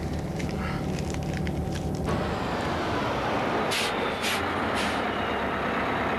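Bus engine running steadily, then, about two seconds in, the louder rushing sound of the bus on the road, with three short air-brake hisses about four to five seconds in as it comes to a stop.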